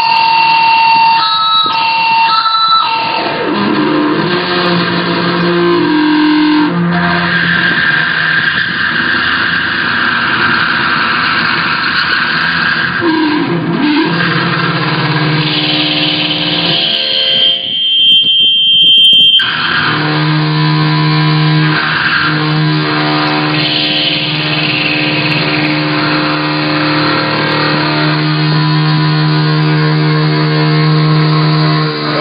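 Electric seven-string guitar kept ringing by a speaker-feedback sustainer, a small speaker over the strings fed from the amp, so each note holds for seconds. The notes shift in pitch, sometimes gliding. About halfway through, a high feedback squeal takes over for a couple of seconds before low held notes come back.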